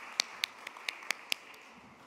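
A person clapping close to a microphone, about four or five sharp claps a second, stopping about one and a half seconds in, over a room's applause that fades away.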